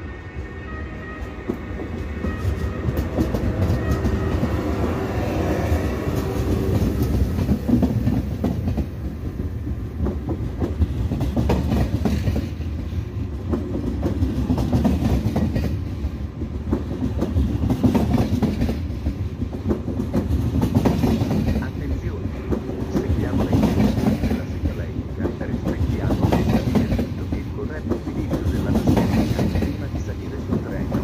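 SNCF TGV InOui high-speed trainset passing slowly alongside the platform. Over the first few seconds a set of steady tones from the power car fades out. Then the coaches roll by with a steady clickety-clack of wheels over the rail joints.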